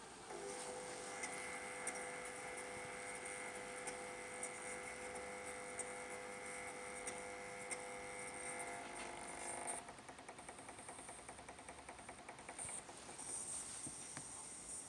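A small electric actuator drives the gas valve to a new setting, running with a steady whine for about ten seconds. The whine then stops and a fast, fine ticking follows.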